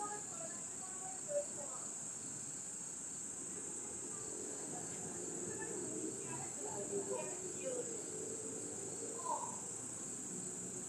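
A steady, high-pitched chorus of crickets chirping, with faint voices of people talking nearby.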